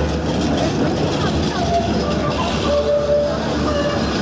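Busy city-centre tram stop ambience: a steady low hum and rumble with passers-by talking.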